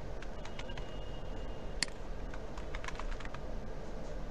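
Computer keyboard typing: irregular key clicks, with one sharper click a little under two seconds in, over a steady low hum.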